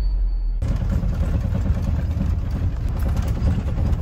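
Steady engine and road noise heard from inside a moving vehicle's cabin, starting about half a second in. Before that, the deep rumble of an intro sting ends abruptly.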